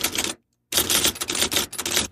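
Manual typewriter keys clacking in rapid runs of keystrokes: a short burst, a brief pause about half a second in, then a longer run.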